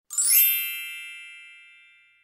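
A chime sound effect added in editing. A quick upward shimmer of bright tones opens it, then a ringing ding that fades out over about two seconds.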